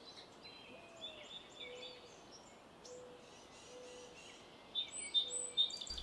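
Faint bird chirps and calls, a little louder near the end, over a soft low note that repeats about once a second.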